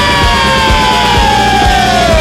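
Rock band playing with distorted electric guitars, bass and drums, under one long held high note that slides slowly down in pitch.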